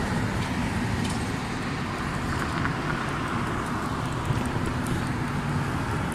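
Steady noise of street traffic at a city intersection, with car engines running.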